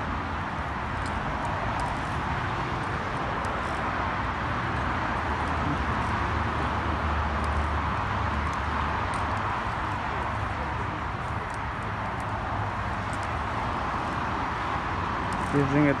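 Steady outdoor background noise: an even wash with a low rumble underneath and a few faint ticks, without clear speech.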